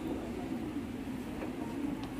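Steady low hum and rumble of room noise inside a large church, with an electric fan running.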